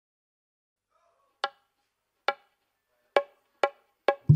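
Silence, then four sharp, short percussion strikes with a wooden ring, about a second apart with the last two closer together. They open a dangdut koplo song.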